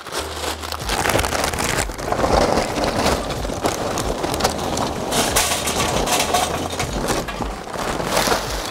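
Hardwood lump charcoal poured from a paper bag into a metal chimney starter: a continuous clatter and crunch of chunks tumbling against the metal and each other, filling the chimney.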